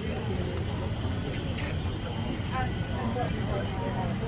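Outdoor market ambience: scattered voices of people talking at a distance over a steady low rumble.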